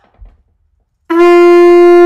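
Conch shell blown like a trumpet, sounding one loud, steady held note that starts about a second in.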